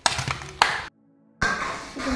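Metal spoon scraping and clinking against a pan while mixing spice paste into raw fish pieces. It cuts off suddenly about a second in, leaving half a second of dead silence, after which background music comes in.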